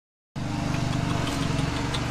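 Lawn mower engine running steadily, with a low, even pulsing hum that cuts in about a third of a second in.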